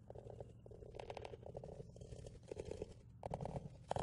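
Fingernails scratching on a weathered wooden deck railing in short, raspy bursts, faint, repeating every half second or so.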